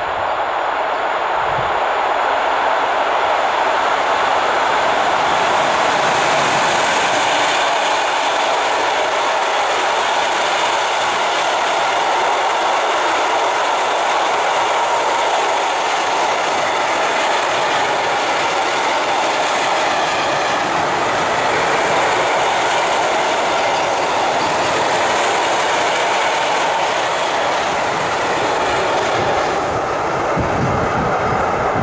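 Freight train of tank wagons rolling past behind a Newag Dragon 2 electric locomotive: a loud, steady noise of steel wheels running on the rails that carries on for the whole time the wagons go by.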